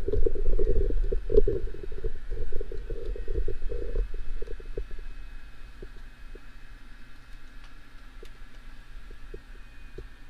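Rumbling, rubbing handling noise from the recording camera being moved, loud for about four seconds and then dying down to a low steady hum with a few faint ticks.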